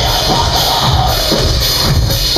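Live industrial metal band playing loud, with electric guitar, bass and drums in a steady beat, heard through an audience camera's microphone.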